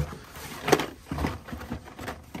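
Carded Hot Wheels cars being pulled from a cardboard shipping case: a few sharp plastic blister-pack clicks and crackles, the loudest about three-quarters of a second in, with lighter handling ticks after.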